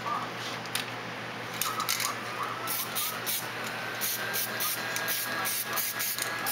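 Electric heat gun running steadily, its fan blowing with a faint whine that slowly rises in pitch, used to force-dry fresh primer. Short rattling clicks come in over it from about a second and a half in.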